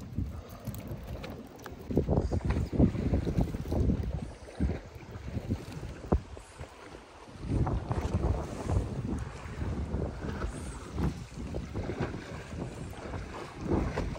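Wind buffeting the microphone on an open boat at sea: an uneven low rumble that swells into louder gusts a couple of times.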